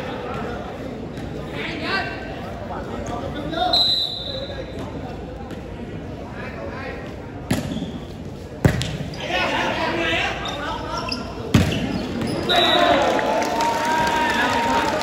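A volleyball struck hard three times during a rally, the first two about a second apart and the third some three seconds later, over constant crowd chatter. Voices swell into shouting near the end as the point is won.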